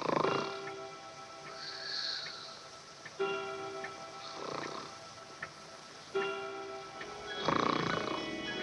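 A person snoring loudly three times, rough rasping breaths a few seconds apart, over soft orchestral film music with sustained chords.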